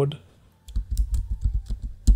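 Computer keyboard being typed on: a quick run of key clicks with soft thumps, starting just under a second in.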